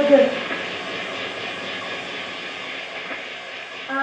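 A woman's long held sung note cuts off just after the start, leaving a steady rushing wash of noise that slowly fades; another held note starts near the end.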